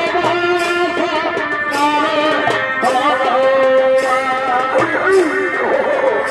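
Purulia Chhau dance music: a shehnai plays a wavering, ornamented melody over drum beats that fall about once a second.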